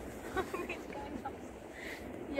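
A few brief, faint fragments of women's voices, about half a second and a second in, over a steady outdoor hiss of wind.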